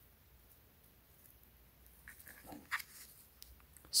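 Mostly quiet, then from about two seconds in a few faint clicks and light rustles as a small plastic handheld gimbal camera is turned over in the hands.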